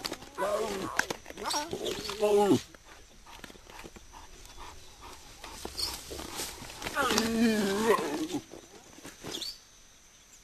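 Animal calls with a wavering pitch, in two spells: one through the first two and a half seconds and another from about seven to eight and a half seconds in, with a quieter stretch between.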